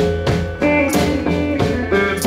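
Hill Country blues played live by a duo: electric guitar picking a riff over a drum kit, with a steady beat of drum and cymbal hits.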